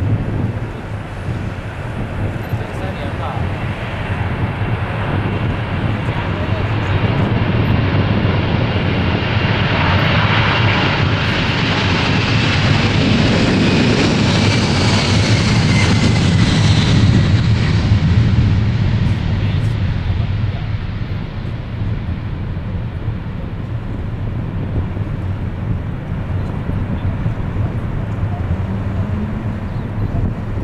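A Boeing 747-400ER's four General Electric CF6-80C2 turbofans at takeoff power through the takeoff roll. The noise builds to its loudest as the jet passes close by about halfway through, with a whine that falls in pitch as it goes past, then eases as the aircraft climbs away.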